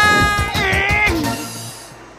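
Cat meows, two in a row: the first held steady, the second rising and falling. Music plays underneath, and the sound fades out near the end.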